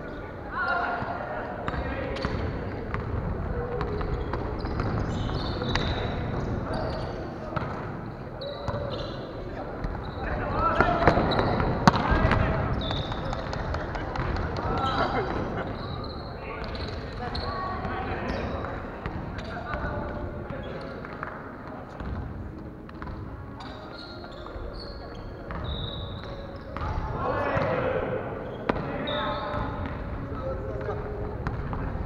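Echoing indoor volleyball play on a wooden gym floor: players' voices call across the hall, loudest about eleven seconds in and again near the end, with the ball knocking off hands and the floor and short, high squeaks of sports shoes.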